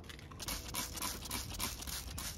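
Hand trigger spray bottle squeezed several times in quick succession, each squeeze a short hiss of mist sprayed onto a plant cutting.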